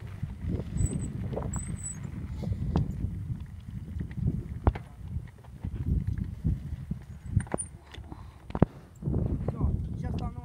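Wind buffeting a phone microphone as a continuous low rumble, with scattered sharp clicks and knocks and faint voices.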